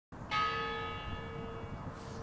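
A single toll of a large bronze honor bell, struck once and left ringing as it slowly fades.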